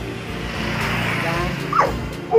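A dog giving a sharp bark near the end, over background music.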